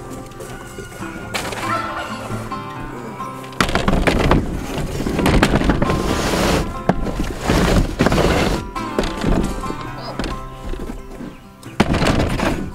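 Background music over plastic poultry crates being slid and stacked, with a loud stretch of rattling clatter from about four seconds in to about nine seconds and another brief clatter near the end.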